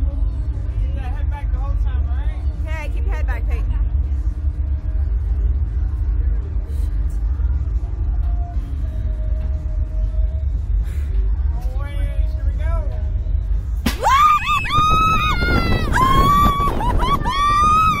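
A steady low rumble with faint distant voices, then about fourteen seconds in the SlingShot reverse-bungee ride launches and two riders scream, long repeated screams over rushing wind.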